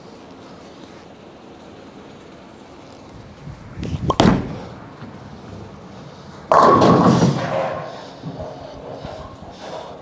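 A reactive-resin bowling ball released onto the lane with a thud about four seconds in. It hits the pins about two seconds later with a loud crash, and the pin clatter fades over the next couple of seconds.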